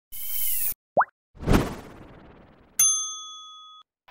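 Animated logo intro sound effects: a short burst of hiss, a quick rising pop, a hit that dies away, then a bright bell-like ding that rings for about a second and cuts off.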